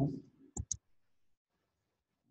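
Two sharp computer-mouse clicks in quick succession, a little over half a second in, right after the tail of a spoken word.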